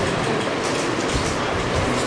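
Steady background noise with a low rumble and no speech.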